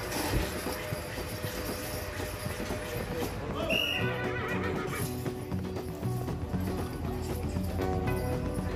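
A pair of miniature horses hauling a heavy weighted sled across a dirt arena in a pulling contest, their hoofbeats heard over the arena's crowd noise. Background music with a regular beat comes in about four seconds in.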